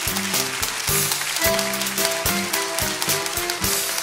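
A small live band plays an instrumental passage with the piano most prominent: a string of short piano notes over the accompaniment, with a fizzy hiss in the high range.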